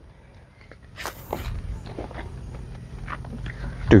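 Footsteps on garden soil and rustling from a handheld camera being carried, with a short loud rustle about a second in. A faint steady high whine runs from then on.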